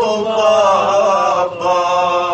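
A man's solo voice chanting an Urdu noha (mourning elegy), holding long, slowly wavering notes, with a short break about one and a half seconds in.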